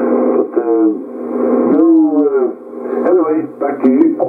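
A distant station's voice received on upper sideband in the 11 m band through a Yaesu FT-450D transceiver's speaker: narrow, thin-sounding speech in short bursts with stretches of band noise between them.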